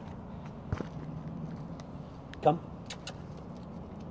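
A few sharp light clicks as a leashed border collie puppy gets up and walks, over a steady low background hum.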